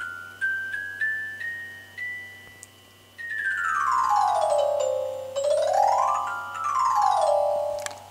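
Homemade Arduino laser harp playing MIDI notes as a hand breaks its beams: single notes stepping up the chromatic scale one at a time, the top note ringing out, then from about three seconds in fast overlapping runs sweeping down, back up and down again across the beams.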